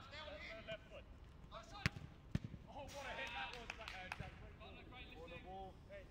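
Players' voices calling across a football pitch, with two sharp thuds of the football being struck about two seconds in, half a second apart.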